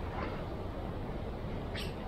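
Steady low rumble of road traffic beside the seafront, with a short high chirp near the end.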